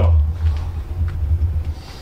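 A steady low rumble, loudest at the very start.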